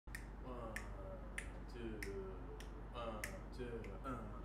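Finger snaps counting off the tempo for a jazz quartet: seven sharp snaps, evenly spaced about 0.6 s apart, with a faint voice underneath.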